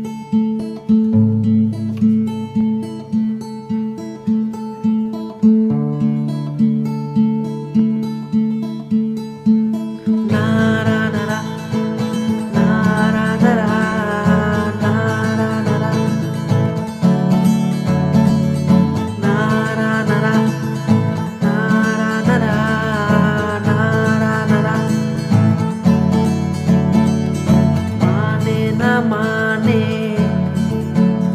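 Acoustic guitar picking a slow intro of single decaying notes. About ten seconds in, a male voice starts singing a Hindi sad song over the guitar.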